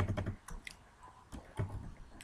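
Computer keyboard keys clicking as a few characters are typed, in several short, irregularly spaced strokes.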